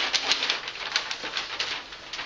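A large flip-chart paper sheet being lifted and flipped over the top of the pad, rustling and crackling with a quick run of crinkles.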